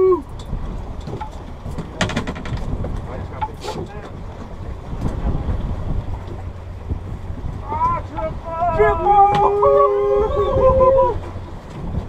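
Steady low rumble of wind and the sportfishing boat's running gear, with a few sharp clicks about two seconds in. Men's drawn-out shouts and calls come between about eight and eleven seconds.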